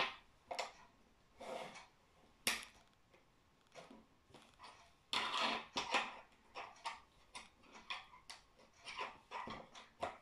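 Plastic pieces of a snap-together electronics kit being handled and snapped onto a battery holder on a wooden tabletop: scattered light clicks and knocks, with sharp clicks about half a second and two and a half seconds in, and a busier run of small clicks and rustling in the second half.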